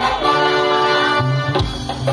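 A live band plays Bahian carnival music through the stage PA. A chord is held for about a second, then the bass and rhythm carry on.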